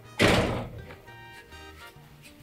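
A door slams shut once, about a quarter of a second in, over background music.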